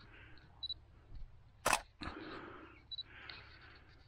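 Handling noise from a camera being gripped and adjusted: a sharp click a little under two seconds in, soft rubbing and rustling after it, and two brief high tones.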